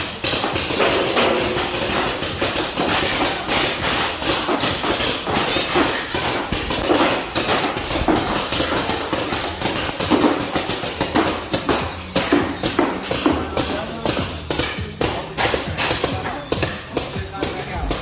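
Paintball markers firing at gallery targets: a continuous run of sharp pops, several a second, over music and voices.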